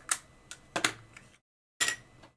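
A few sharp plastic clicks and clacks as a small stamp ink pad is pulled from its case and its lid handled.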